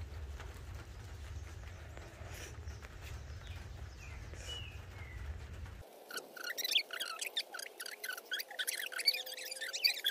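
Small birds chirping over a faint low ambient rumble. A few thin chirps come in the first half. About six seconds in, the rumble drops away and a quick, busy run of high chirps follows.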